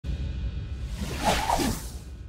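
Intro jingle music with a steady low beat, and a whoosh sound effect swelling about a second in as the title animates.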